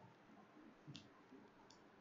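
Near silence: faint room tone with two short, faint clicks, one about a second in and one near the end.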